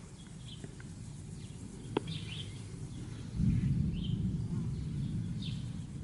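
Birds chirping now and then in short calls, a single sharp click about two seconds in, and a low rumble coming up a little after three seconds and staying to the end.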